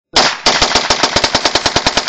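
Handgun fired in rapid fire: one shot, a brief pause, then a fast, even string of shots at about a dozen a second.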